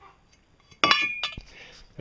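Metal pipes clinking together: about a second in, a sharp metallic strike with a brief ringing tone, followed by a second, duller knock.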